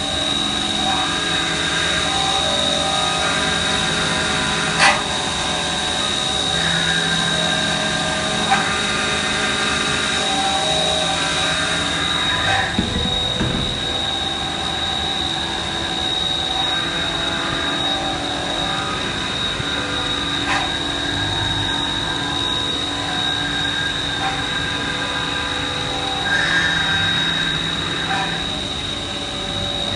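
Enclosed CNC machining centres running in a machine shop: a steady mix of machine hums under a constant high whine, with a couple of sharp clicks in the first half.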